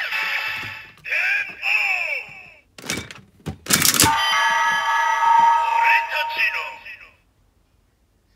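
Bandai DX Ziku-Driver toy belt playing its finisher sequence with a Den-O Climax Form Ridewatch: electronic sound effects and voice calls from the toy's speaker, then a sharp plastic clack as the belt is spun around about three seconds in. A jingle of steady electronic tones follows and cuts off suddenly about seven seconds in.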